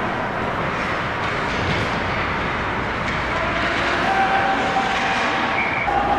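Steady noise of an ice hockey game in an indoor rink: skates on the ice and general arena din, with a few faint voices or calls near the end.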